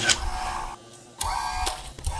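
Two short electronic, machine-like sound effects, each under a second long with a quiet gap between, the second ending in a falling pitch.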